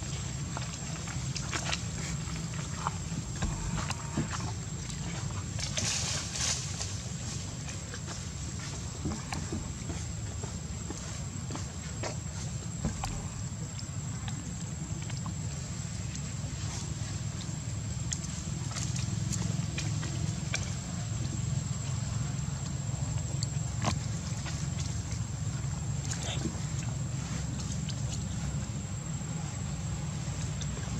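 Outdoor ambience: a steady low rumble under scattered small clicks and rustles, as macaques pick at and eat rambutans on the ground, with a faint steady high tone throughout.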